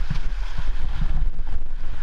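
Rushing whitewater of a river rapid splashing around a kayak, loud and close, with a heavy low buffeting rumble on the camera microphone and irregular splashes.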